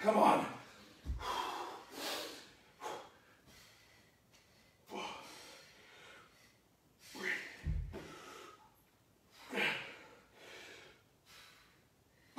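Heavy breathing from people lifting dumbbells: sharp, forceful breaths come irregularly every second or two. There are two dull low thuds, about a second in and again near eight seconds.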